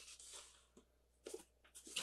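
Near silence with a few faint rustles and scrapes of a small cardboard box being handled.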